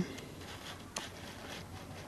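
Faint handling noise as a soldered cable is worked free of a helping-hands tool's alligator clips, with a few small clicks, the clearest about a second in.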